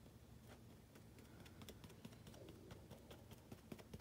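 Faint, irregular clicks and taps of a Gorilla Glue bottle's nozzle dabbing glue onto a foam part, coming more often in the second half.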